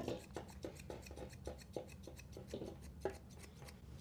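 Faint, quick snips of blending grooming shears cutting a dog's foot hair, about three a second.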